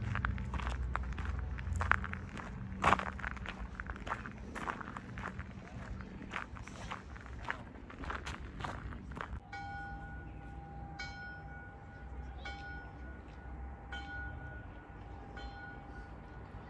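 Footsteps crunching on a gravel path at a walking pace. From a little past halfway, a steady high two-note tone comes in, swelling about every second and a half.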